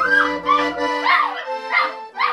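A dog howling along to an accordion: about four short, wavering cries that bend up and down in pitch over steady held accordion chords.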